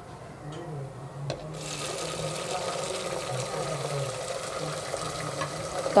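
Chopped tomatoes tipped into hot oil and browned onions in an aluminium pressure cooker, starting a sizzle about a second and a half in. The sizzle rises a little and then holds steady.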